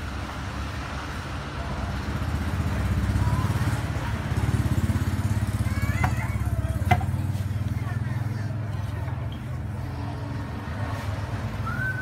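A steady low engine-like rumble, with a few faint high chirps and two sharp clicks about halfway through.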